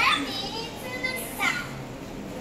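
Children's voices in a hall: a few short, high-pitched calls and chatter over a low murmur.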